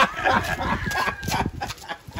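Laughter: a quick, cackling run of short laughing pulses.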